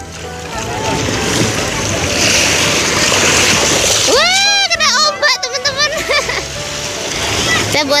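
Shallow surf washing up over wet beach sand with a steady rush, foaming over the sand about halfway through. Around the same moment a child's high voice calls out in short rising-and-falling squeals.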